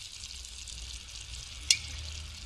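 Chicken pieces, dried fruit and apple sizzling steadily in a frying pan as a drizzle of olive oil goes in, the cooking liquid already boiled dry. A single sharp click comes near the end.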